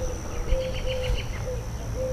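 Insects singing outdoors: a steady high-pitched drone, with a short rapid trill from about half a second to just past one second, over a low rumble.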